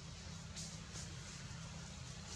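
Faint steady background hiss with a low hum, broken by two or three soft brief rustles.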